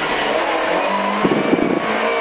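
Rally car engine heard from inside the cabin, pulling in a low gear with its pitch slowly climbing, and a brief rough, rattly patch about halfway through.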